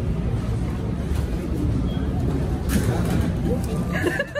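Restaurant kitchen background noise: a steady low rumble with indistinct voices, and a short sharp noise about three-quarters of the way through.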